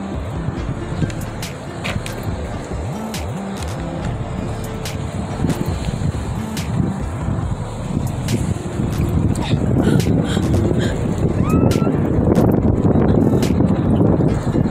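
Wind rushing over the microphone while riding, building through the second half, with scattered clicks and knocks from the phone being handled.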